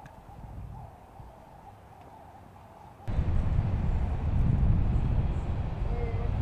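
Outdoor background noise: quiet at first, then about three seconds in it jumps abruptly to a much louder low rumble.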